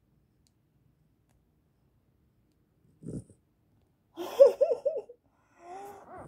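A dog's short wavering whine-groan, about a second long with a quick warble in pitch, near the end. A brief low thump comes about three seconds in.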